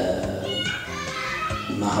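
A song with singing voices and music, in a softer stretch between two phrases of the lead vocal.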